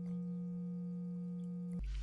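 A steady low hum: one low tone with a fainter higher one above it, unchanging, that cuts off abruptly near the end.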